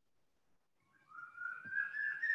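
Near silence for about a second, then a high whistling tone that rises slowly in pitch and holds.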